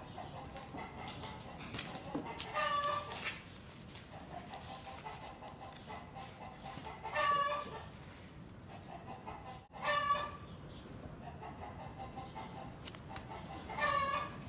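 Organ music playing faintly in the background, cut by four short, loud animal calls spaced about three to four seconds apart.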